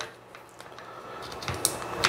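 Faint handling noise of a flashlight's corded remote switch being pushed onto a small accessory rail on a rifle handguard. There are a few light clicks near the end.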